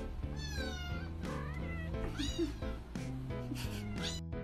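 A domestic cat meowing twice, each call gliding in pitch, over background music.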